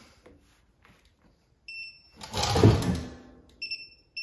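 Digital torque wrench beeping as it nears and reaches its preset 32 ft-lb on a brake caliper bolt: one short beep, then a run of quick beeps about twice a second starting near the end. Between them, a loud short burst of rushing noise.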